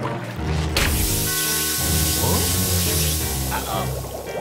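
Cartoon sound effect of air hissing out of an inflatable raft as it deflates, starting suddenly about a second in and running on, over background music.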